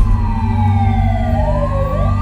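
Emergency vehicle siren wailing: one tone falls slowly in pitch, and a second tone starts rising near the end, over a steady low rumble.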